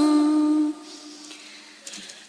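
A sung chant of Vietnamese Buddhist verse: a voice holds the last note of a line steadily for under a second, then stops, leaving a short pause with a faint lingering tone.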